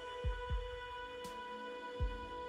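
Background music with a deep, thudding electronic kick drum under steady held synth tones and a faint high tick between the beats.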